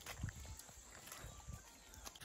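Faint, irregular low thuds of footsteps on a wet, muddy path, with a little handling noise.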